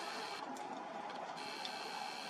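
Steady faint hiss of background noise, with no distinct event.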